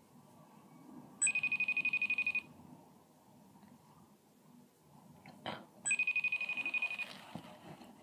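A smartphone ringing out on an outgoing call: two bursts of a high electronic ring with a fast pulse, each just over a second long and about four and a half seconds apart. A short knock comes just before the second ring.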